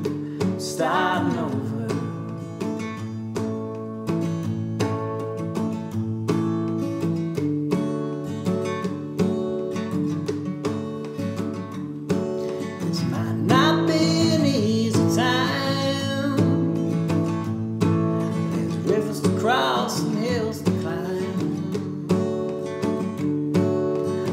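Martin 12-fret 000-17S acoustic guitar strummed steadily in an instrumental break, the chords changing every second or two.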